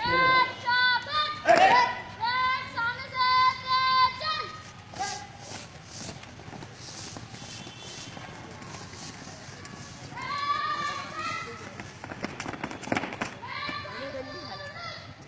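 Students' marching drill: loud, held shouted commands or counts, then the shuffle and tramp of many feet marching on a paved yard, another shout about ten seconds in, and a quick flurry of sharp footfalls near the end as the ranks halt.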